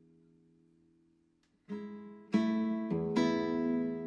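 Background acoustic guitar music. It is near silent for about the first second and a half, then strummed chords come in one after another and ring on.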